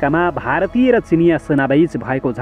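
A man's voice narrating continuously, with drawn-out vowels.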